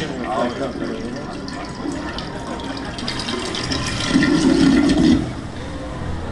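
Water spraying and splashing from a stage water effect, with crowd voices over it and a louder swell of voices about four seconds in.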